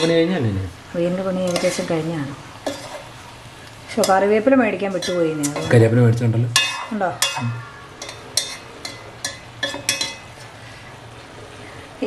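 A metal spoon stirring vegetables in a granite-coated cooking pot, scraping and clinking against the pot, with a run of sharp clicks in the second half. A voice is heard in the first half.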